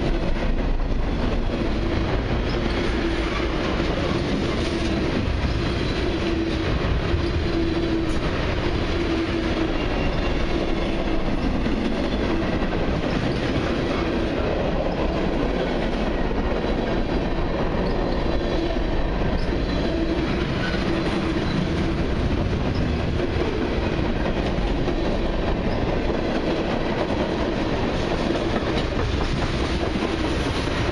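Freight cars of a long CN mixed freight train, covered hoppers then tank cars, rolling steadily past close by: a continuous rumble of steel wheels on rail with clickety-clack over the rail joints, and a low whine that comes and goes.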